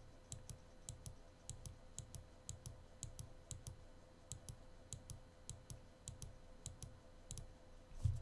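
Faint, regular clicking at a computer, about two clicks a second, most of them in quick pairs, over a faint steady hum.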